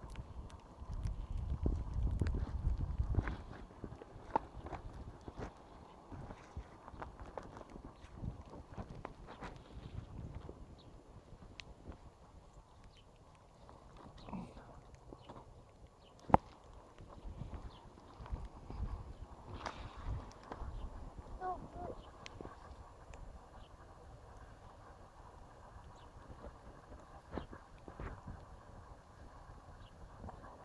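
Quiet handling sounds of a plastic toy excavator being worked in snow: scattered small knocks, clicks and crunches, with a low rumble in the first few seconds and one sharp click about sixteen seconds in.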